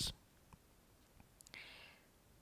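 Near silence in a pause in a man's speech, the last word trailing off at the start. A soft breathy hiss comes in the last half second.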